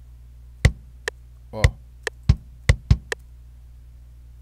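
Kick drum sample from FL Studio's FPC rock kit (the bassier 'Kick 2') sounding as single short hits, about five in all, each triggered as a note is clicked into the piano roll. A few lighter clicks fall between the hits, over a steady low hum.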